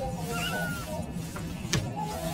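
A cat giving one short, faint call about half a second in, over a steady low hum. The audio is warped by layered pitch-shift effects.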